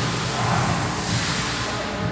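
Rear liftgate of a Nissan Rogue swinging up on its gas struts: a steady rushing hiss with no clicks or thumps.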